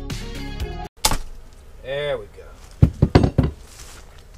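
Background music that cuts off about a second in, followed by a sharp knock. Then comes a brief voiced sound and a quick run of four or five loud knocks of a tool on wood as a nailed board is worked loose.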